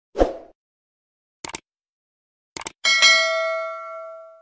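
Subscribe-button animation sound effects: a short swoosh, a quick double click, a second double click, then a bell-like notification ding that rings out and fades over more than a second.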